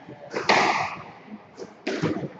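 Squash rally: the ball is struck by a racket and hits the court walls, each hit ringing in the enclosed court, with the loudest about half a second in and further hits near the end.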